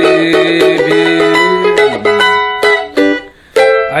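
Rosini cavaquinho strumming a samba-pagode chord progression, chord after chord ringing on. There is a brief pause a little past three seconds, then a fresh strum near the end.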